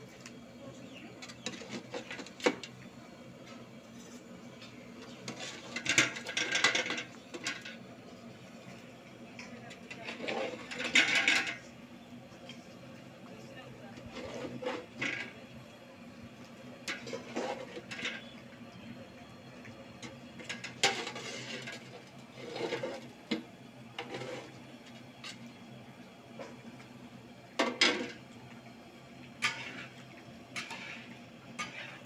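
A metal spatula and ladle scraping and clinking against a large iron wok as pointed gourds in mustard gravy are stirred, in irregular strokes with a few louder scrapes.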